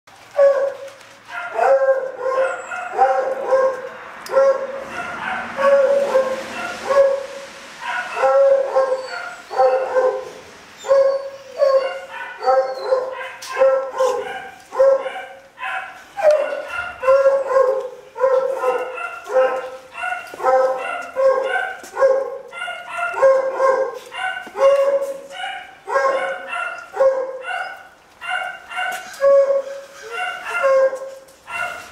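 Beagle barking over and over in short, pitched barks, about one a second without a break.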